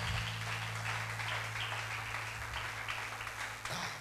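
A congregation clapping steadily in applause, with a faint low hum underneath.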